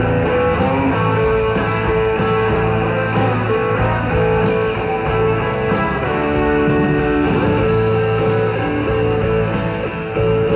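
Live rock band playing with no singing: electric guitars holding sustained notes over bass and drums, with steady cymbal strokes keeping the beat, heard loud through an arena PA.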